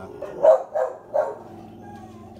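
A dog barking three times in quick succession, all within about the first second and a quarter.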